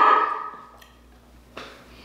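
A person's voice holding one steady note that fades out within the first half second or so, then a quiet room with a single short click about one and a half seconds in.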